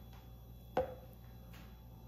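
A single sharp clink a little under a second in, with a brief ring, from a metal ladle knocking against the glass bowl of cream as it scoops.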